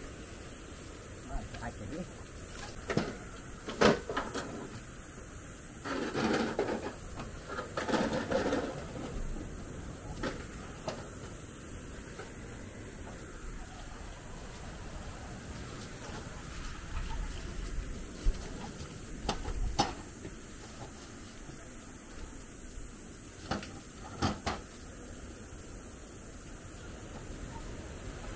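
Outdoor ambience with a steady background hiss, a couple of brief bursts of people's voices, and a few scattered sharp clicks or knocks.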